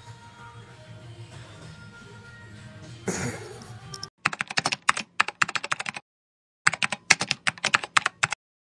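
Faint background music with a steady low beat, then, about four seconds in, rapid computer-keyboard typing clicks in two quick runs with a short pause between them: a typing sound effect.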